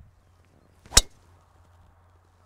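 A golf driver striking a teed ball: one sharp crack about a second in.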